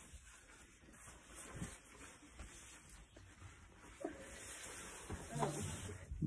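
Faint breathing of a man taking a puff on a disposable vape: a near-silent draw, then a soft breathy exhale over the last two seconds.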